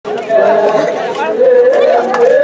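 A group of women singing an Adivasi folk song together in long held notes that slide and waver in pitch, with a crowd talking underneath.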